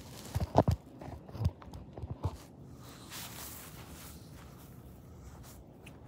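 Handling knocks and scuffs from a phone being set down, a few sharp ones in the first couple of seconds, then a faint steady outdoor background.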